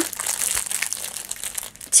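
Clear plastic wrap on a rolled diamond-painting canvas crinkling in irregular rustles as it is handled, dropping away briefly near the end.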